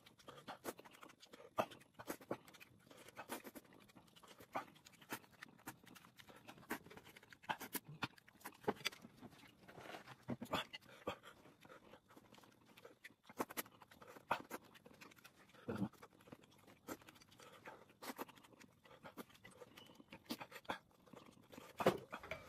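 A person eating chilli-hot noodles fast: irregular slurps, chewing and breaths in quick succession, fairly quiet.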